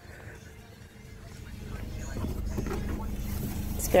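A motor vehicle's low engine rumble, growing steadily louder over about three seconds as it draws near.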